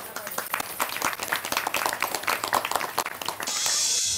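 A group of people clapping their hands, irregular and overlapping, with some voices among them. A short bright hiss comes in over the last half second.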